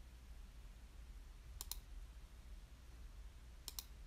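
Two quick double clicks about two seconds apart, the second near the end, over a faint low hum of room tone.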